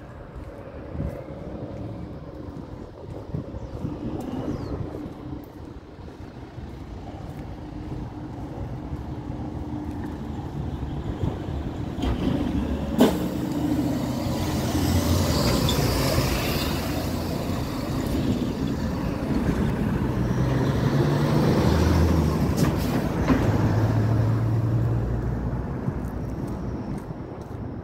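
Street traffic: a heavy vehicle's engine rumble close by, growing louder through the second half, with a sharp click about halfway and a hiss soon after.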